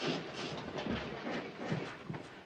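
Indistinct room noise: a low, noisy hiss with a few soft, irregular knocks or shuffles.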